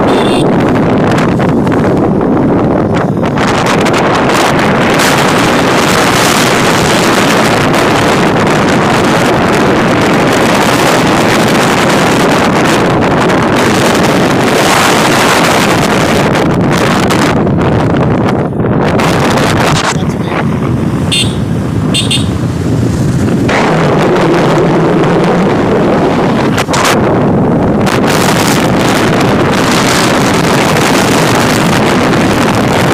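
Steady wind rush on the microphone over the engine and road noise of a moving motorcycle.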